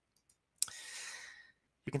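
A narrator's mouth click, followed by an in-breath of about a second that fades out, taken just before speaking again.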